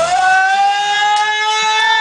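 Electric guitar feedback: a single sustained, steady tone that slides up in pitch at the start and then holds. The drums and the rest of the band have dropped out.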